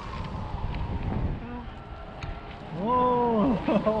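Wind rushing over the camera microphone of a paraglider in flight. About three seconds in comes a loud, drawn-out vocal cry from one of the fliers, rising and then falling, just before an "Oh".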